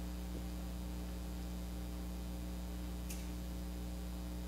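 Steady low electrical hum over faint hiss, with one faint click about three seconds in.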